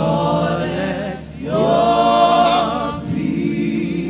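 A group of voices singing a gospel worship song in sung phrases, with a short dip just after a second in and a louder held phrase through the middle.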